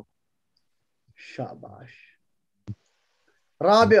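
A pause in a recited drill: a softer voice speaks briefly about a second in, a single short click sounds a little before three seconds, and loud recitation resumes near the end.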